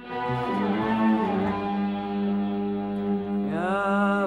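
An Arabic orchestra with strings plays an instrumental passage: a steady low drone sits under melodic string lines. Near the end the strings slide upward into a held note. The sound is narrow and muffled, like an old recording.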